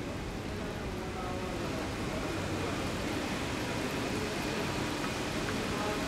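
Steady, even background noise of a large, nearly empty airport terminal, a low hum with no distinct events.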